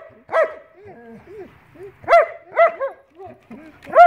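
German Shepherds barking during play: several sharp, high barks, the loudest just after two seconds, with quieter yips between.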